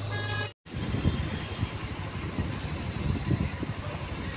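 Riding noise from a moving motorcycle: wind buffeting the microphone over engine and road noise. A brief dropout to silence comes about half a second in.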